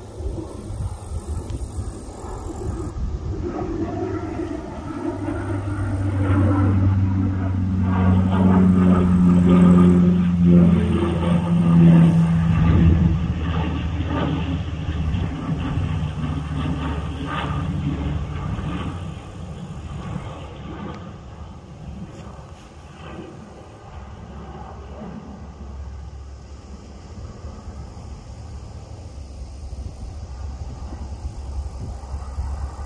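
Canadair CL-415 water bomber's twin Pratt & Whitney PW123AF turboprops passing overhead. The propeller drone builds to its loudest about ten to twelve seconds in, drops in pitch as the plane goes by, then fades to a lower steady drone.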